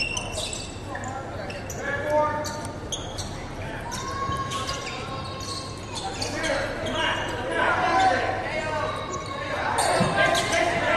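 Basketball game on a gym's hardwood court: the ball bouncing and other short, sharp knocks, with players and spectators calling out, all echoing in the large hall.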